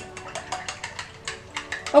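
A rapid run of evenly spaced clicks, about seven a second with a short break just past the middle, over soft background music.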